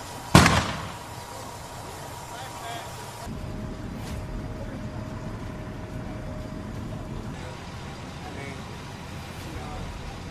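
A single loud, sharp bang from the burning building, trailing off over about half a second, over the steady noise of the fire scene.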